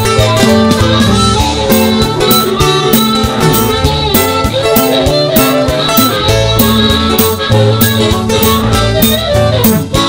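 Instrumental break of a song with no singing: guitar-led band music over a steady beat of several strokes a second.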